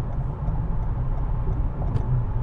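Steady low rumble of a car driving at highway speed, heard from inside the cabin: engine and tyre-on-road noise.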